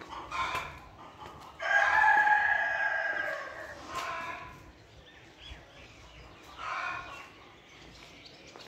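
A rooster crows once: one long call starting about one and a half seconds in and lasting about two seconds. A few short chicken calls come before and after it.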